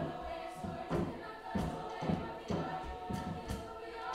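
Mixed-voice school choir singing held chords over a steady hand-drum beat, about two strikes a second.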